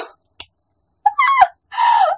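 A woman laughing: a brief catch of breath, then a short high-pitched laugh that rises in pitch about a second in, and another breathy burst of laughter near the end.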